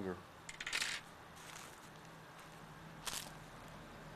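Short clicks and rattles from hands handling the copper wire at the pipe clamp: a quick cluster about half a second in, and a single click near the end.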